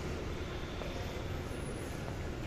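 Steady low rumbling ambience of a large indoor mall concourse, with no distinct events standing out.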